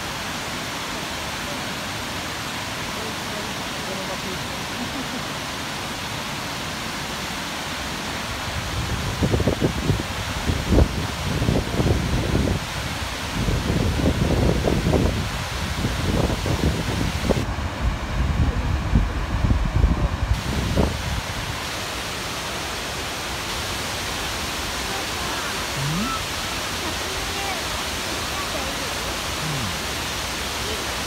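Shiraito Falls, a wide curtain of many thin waterfalls over a cliff into a pool, giving a steady rushing hiss of falling water. For a stretch in the middle it is broken by irregular low rumbles.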